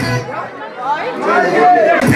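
Several people's voices chattering in a large hall during a short gap in the dance music. The music cuts off at the start and comes back at the end.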